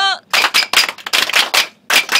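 A crowd clapping hands together in unison in the 3-3-3-1 rhythm of a Japanese ippon-jime ceremonial hand-clap, sharp claps coming in quick groups.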